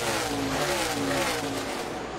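NASCAR Xfinity stock cars' V8 engines at full speed passing the trackside microphone, the engine note falling steadily in pitch as they go by.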